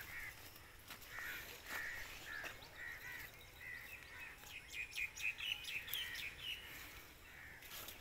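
Birds calling in the background: short calls repeated about twice a second, with a quicker run of higher chirps around five to six seconds in.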